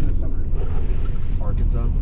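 Steady low rumble of a gondola cabin riding the cable, with a brief rush of hiss about half a second in and quiet voices of riders in the cabin.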